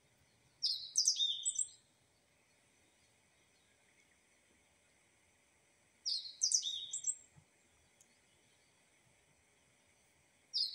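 A bird chirping in two short bursts of high, quick notes, about a second in and again about six seconds in, with near silence between.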